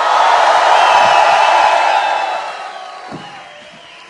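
Large concert audience cheering, swelling to a peak about a second in and then fading away over the next couple of seconds.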